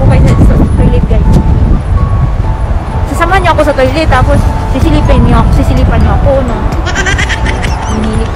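Wind buffeting a phone's microphone, a loud low rumble, with a woman's voice wavering up and down in pitch about three seconds in and again later, and faint background music with held notes.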